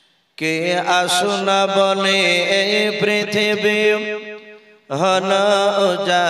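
A man singing a devotional verse through a microphone and sound system, drawing out long, ornamented held notes. It starts about half a second in, breaks briefly near the end and then resumes.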